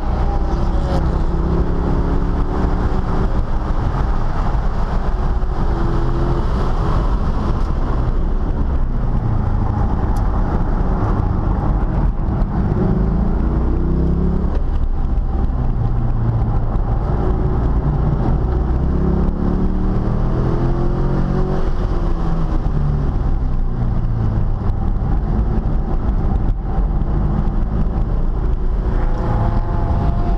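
Chevrolet C5 Corvette's V8 heard from inside the cabin at speed on a race track, the engine note repeatedly climbing under acceleration and falling away between corners, over constant road and wind noise.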